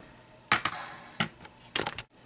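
A few sharp clicks and knocks: the loudest about half a second in, another just after one second, and a quick pair near the end.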